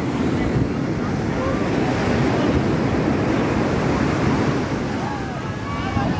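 Ocean surf breaking and washing up a sandy beach, with wind buffeting the microphone. Faint voices sound through it in the background.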